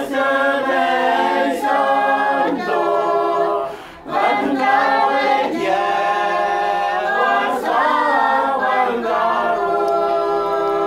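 A group of voices singing a hymn together unaccompanied, with a short break for breath about four seconds in.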